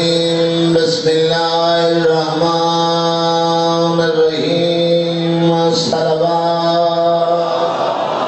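A zakir's male voice chanting through a microphone in long held notes, drawn-out melodic phrases of one to two seconds each, in the sung style of a Shia majlis recitation.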